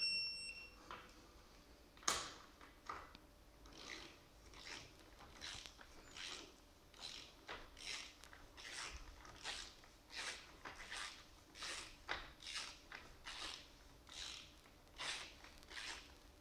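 Electronic torque wrench on a wheel nut: a short high beep at the start as it reaches the set torque, then the wrench's ratchet clicking in short bursts, about one to two a second, as it is swung back and forth over the nut.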